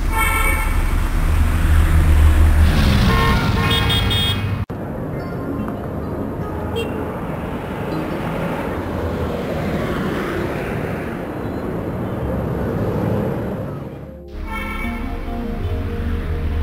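Dubbed-in city traffic ambience, car horns honking over a steady road rumble, mixed with background music. The sound changes abruptly about four and a half seconds in to a steadier traffic haze, and briefly dips near the end before tones return.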